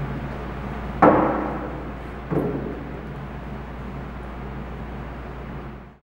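Two dumbbells set down one after the other on a metal dumbbell rack: two sharp clanks about a second and a half apart, the first louder, each ringing out briefly.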